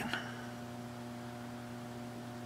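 OutBack FX inverter humming steadily while inverting about 1.2 kW to the grid, a low hum with a stack of higher overtones.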